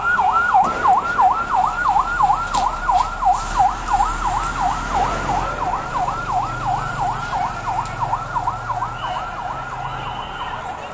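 Police armoured vehicle's electronic siren on a fast yelp, sweeping up and down about four times a second and fading slightly toward the end.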